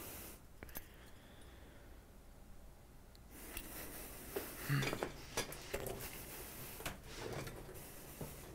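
Faint clinks and light knocks of small tools and parts being handled on a workbench. They start about three seconds in, after a nearly quiet start.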